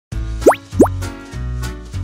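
Upbeat children's intro jingle with two quick rising pop sound effects, about a third of a second apart, near the start.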